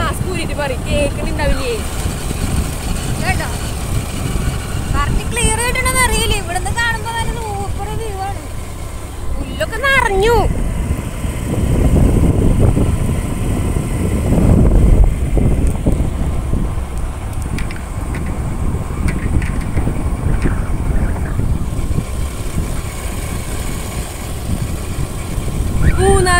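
Steady low rumble of a moving road vehicle with wind noise, swelling louder for a few seconds midway.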